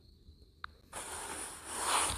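Near silence, then about a second in a steady hiss comes in and grows slightly louder: the background noise of a voice recording that has just started playing, just before the recorded voice speaks.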